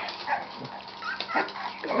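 Boston terrier puppies giving several short, high whimpers and yips.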